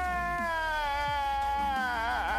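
A long, high-pitched wailing cry, one unbroken note slowly falling in pitch, turning wavery near the end.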